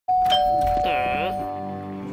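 Doorbell chime: a higher tone struck first, then a lower one a moment later, the two ding-dong notes ringing on and slowly fading.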